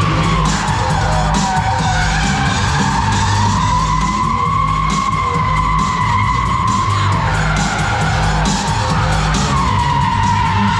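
Car tyres squealing as stunt cars drift on tarmac, one long unbroken screech that wavers in pitch, with music playing underneath.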